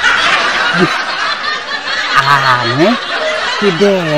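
A man laughing close to the microphone: breathy snickering at first, then drawn-out voiced laughter rising and falling in pitch from about halfway through.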